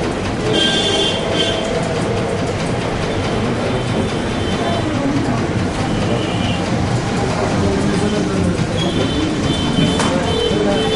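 Steady, loud rumbling noise with the indistinct voices of several people underneath it.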